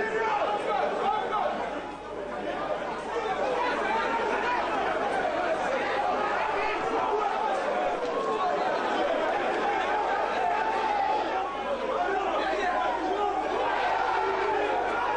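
Many voices talking at once: a steady babble of chatter with no single clear speaker.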